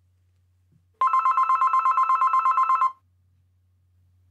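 A telephone ringing once: a fast-pulsing two-tone trill lasting about two seconds, starting about a second in.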